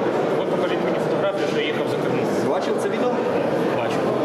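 Speech: a man talking, with no other sound standing out.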